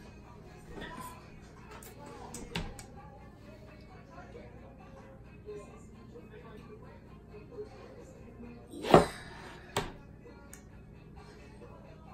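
Kitchen knife cutting through a block of frying cheese on a plastic cutting board, with a few light knocks and one loud knock about nine seconds in as the blade meets the board.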